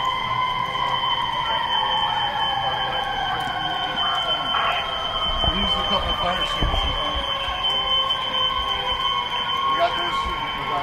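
Fire alarm sounding a steady high tone, with a siren wail underneath that falls slowly over several seconds and rises again near the end.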